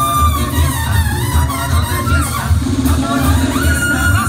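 A Mexican banda sinaloense brass band playing live and loud, with a steady low bass beat about twice a second under horn lines.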